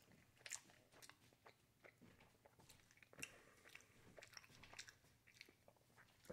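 Near silence with faint, scattered small clicks of someone chewing food.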